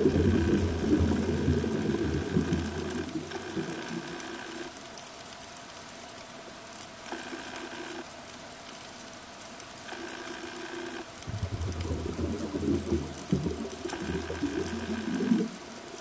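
Scuba diver breathing through a regulator underwater: a rough, low bubbling of exhaled air at the start that fades over the first few seconds and returns about eleven seconds in, with a quieter hiss of inhaled air in short stretches between.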